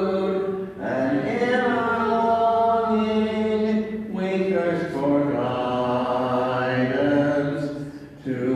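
Voices singing a church hymn in slow phrases of long, held notes, with short pauses for breath between phrases.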